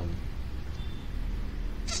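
Pause in the talk filled by a steady low background hum, with a brief hiss at the very end as the voice comes back.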